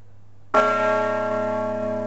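A church bell struck once about half a second in, then ringing on with many overtones, slowly fading.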